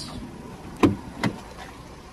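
Two sharp clicks from a Vauxhall Insignia's rear door latch and handle as the door is pulled open, the louder one a little under a second in and a lighter one just after.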